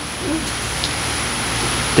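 Steady background hiss, with a brief faint vocal sound a fraction of a second in.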